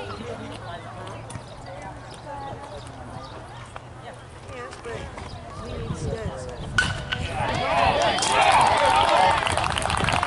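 A baseball bat hitting a pitched ball with one sharp crack about seven seconds in, followed at once by spectators and players shouting and cheering. Quieter crowd chatter before the hit.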